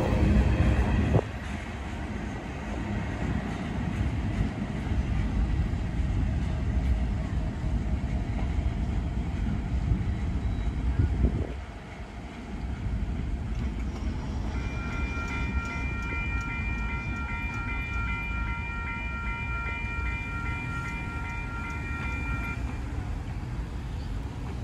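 Last cars of a freight train rolling past, loud for the first second, then fading to a steady rumble as the train moves away. About halfway through, a distant multi-note train air horn sounds steadily for about eight seconds.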